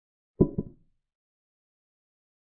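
Digital chess board's piece sound effect as a knight captures: two short clacks about a fifth of a second apart, the first louder.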